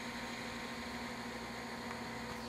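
Room tone: a steady low hum and hiss with no distinct events.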